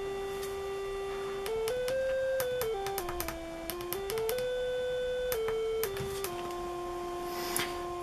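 A PSoC CY8C29466 signal generator's tone from a small speaker, stepping through a run of musical notes between about 330 and 520 Hz as its push button is pressed, each note held about half a second to a second and a half, with small clicks at some changes. The speaker guesses that this is the triangle-wave setting.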